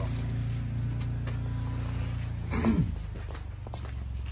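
A person coughs, then a steady low mechanical hum runs on. A little past halfway a short, loud sound drops sharply in pitch.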